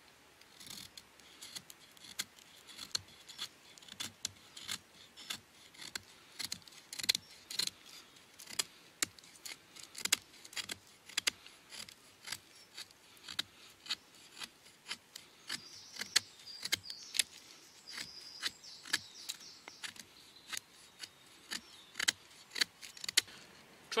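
HX Outdoors AK-47 fixed-blade knife, with a 440C stainless steel blade, shaving curls down a dry stick to make a feather stick: a long run of short scraping strokes, about two or three a second.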